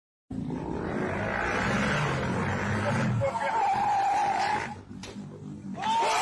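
A motorcycle engine running on a street, with people's voices shouting over it.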